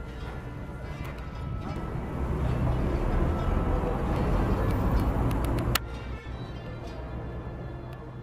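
Street traffic rumble swelling as a vehicle passes close by, then cut off suddenly about six seconds in.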